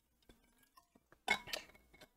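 A bottle clinking briefly as he drinks from it: a few faint small knocks, then a short clink with a little ringing a little past halfway.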